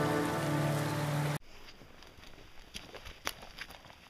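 Acoustic guitars holding a final strummed chord that rings and slowly fades, cut off abruptly about a second and a half in. After that, only a few faint scattered clicks and ticks.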